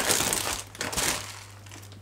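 A shopping bag crinkling as hands rummage through it for groceries. The sound is loudest in the first second and fades away after about a second.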